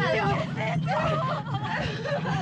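Several people shouting and crying out over one another, their voices overlapping and jumping in pitch.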